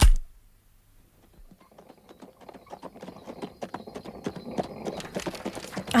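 A single thump at the start, then horse hooves clip-clopping on a street, fading in about a second and a half later and growing louder.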